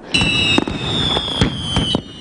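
New Year fireworks going off: several sharp bangs over a dense crackling din, with a high whistle gliding slowly down in pitch.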